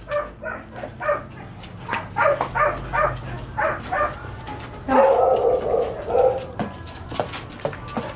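A dog barking repeatedly in short barks, with a longer, rougher bark about five seconds in.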